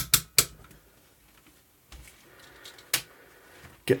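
Sharp clicks from the rotary selector dial of an AMECaL ST-9905 digital multimeter as it is turned to the continuity setting. There are two clicks right at the start and one more about three seconds in.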